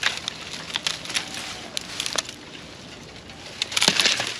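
Dry wood and brush crackling with scattered sharp cracks as a piece of wood is bent until it snaps, a louder cluster of cracks coming near the end. The piece is too weak to hold and breaks.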